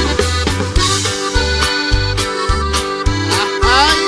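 Norteño band playing an instrumental break between sung verses: accordion melody over a bass line in a steady two-beat rhythm, with a quick rising run near the end.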